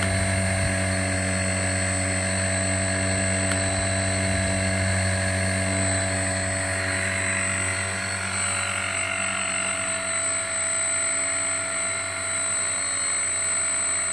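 A small electric ducted fan running steadily at low speed: an even hum with a thin, steady high whine over it.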